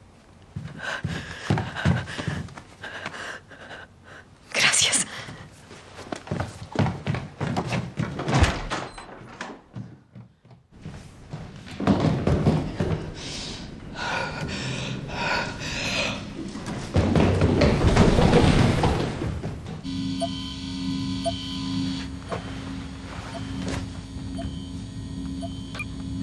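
Film sound effects: a run of thuds and knocks with a gasp and hurried movement, then a steady low hum with faint tones over the last few seconds.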